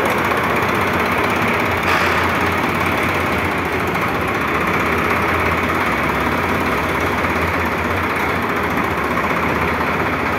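Sonalika Sikander 50 tractor's diesel engine idling steadily, with a slight swell about two seconds in.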